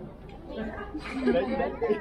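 Crowd chatter: several people's voices talking over one another, louder from about a second in.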